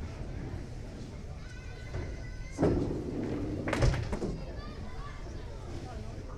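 Bowling alley din: low chatter of onlookers, and a sudden loud rumbling clatter about two and a half seconds in that lasts over a second.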